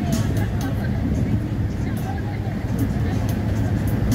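Motor yacht under way: a steady low rumble of engine and wind across the open deck, with people's voices talking faintly underneath.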